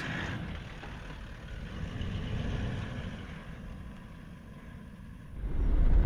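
Toyota Land Cruiser 76 station wagon being driven: a steady rumble of engine and road noise, getting louder and deeper near the end.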